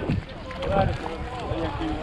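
Indistinct voices of several people talking at a distance, over a low rumble on the microphone.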